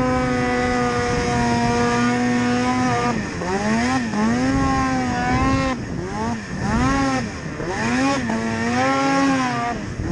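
Ski-Doo Rev 800 two-stroke snowmobile engine running at high revs, held steady for about three seconds, then rising and falling over and over as the throttle is worked.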